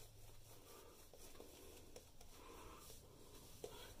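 Very faint soft scrubbing of a two-band badger-hair shaving brush working soap lather over stubbled skin.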